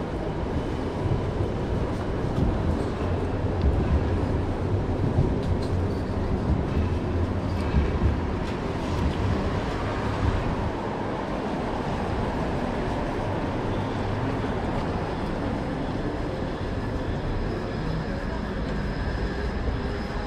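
City street ambience on a wet street: a steady low traffic rumble that swells over the first several seconds and then eases, under a continuous background of street noise.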